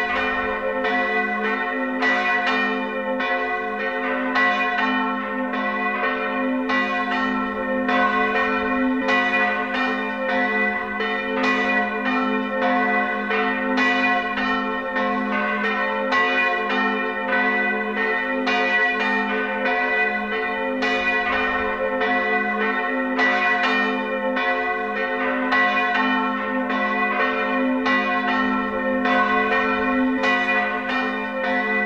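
Full peal of former parish church bells tuned to G, B-flat and C: two cast-steel bells made by Böhler in 1922 and a small bell from 1500, swinging and striking in a continuous run of overlapping strokes, several a second, each ringing on into the next.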